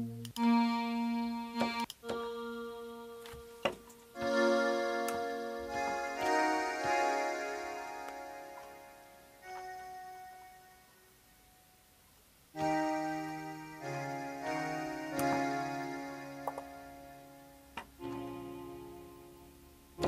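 Synthesizer pad chords from the Dune CM soft synth, auditioned through several pad presets in turn: each chord sounds and slowly fades before the next begins, with a near-quiet gap about ten seconds in. A few short clicks come between the chords.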